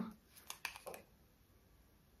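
A few faint clicks in the first second as the screw cap of a small bottle is twisted open, then near silence.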